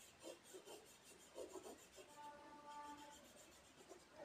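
Faint scratching of a marker pen's tip rubbed quickly back and forth on paper while colouring in a shape, in a rapid series of strokes.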